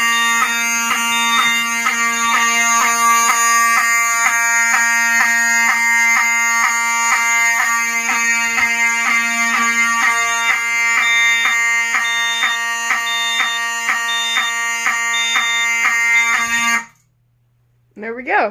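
Ellenco 45S-HSD-24 horn/strobe, a rebranded Wheelock 7002T, sounding a loud, steady horn tone with a fast, even flutter, set off by a fire drill from the alarm panel. It cuts off suddenly near the end when the drill is ended.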